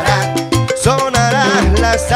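Salsa music playing: an instrumental passage between sung lines, with a bass line and percussion keeping a steady rhythm under the melody.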